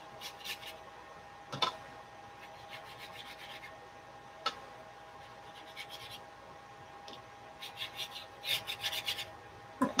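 Watercolor brush scrubbing wet paint across watercolor paper in several runs of short, quick strokes, with two sharp taps in between.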